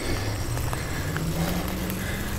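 Wind rumble and rolling noise on a bicycle ride along a paved path. Under it, a motor vehicle's engine rises slowly in pitch.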